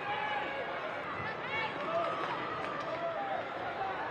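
Open-air stadium ambience: distant calls from players and scattered chatter from a small crowd, with one rising shout about a second and a half in.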